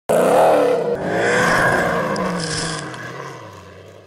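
Rally car engine revving hard as it passes close by, rising in pitch twice, then falling in pitch and fading as it drives away.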